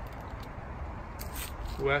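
A steady low outdoor rumble with a few faint brief rustles, then a man's voice saying "West" near the end.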